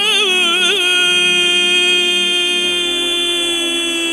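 A man singing in Turkish folk style. Quick wavering ornaments in the first second, then one long held note for the rest.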